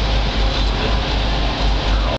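Twin Detroit Diesel 6-71 two-stroke inline-six marine diesels, port and starboard, running steadily with a pulsing low beat. Both engines are running well with good oil pressure.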